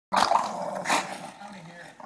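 English bulldog growling while biting and tugging at a sneaker on a person's foot: two loud rough bursts in the first second, then a lower steady growl.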